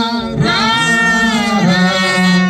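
Unaccompanied singing of a slow worship song, with long held notes that glide from one pitch to the next.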